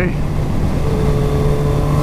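Motorcycle engine droning at a steady cruise, heard with wind rushing over the rider's microphone; the pitch holds steady, and a faint higher steady tone joins about a second in.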